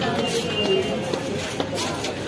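Background voices of people talking nearby amid general street bustle, with a brief high thin tone about half a second in.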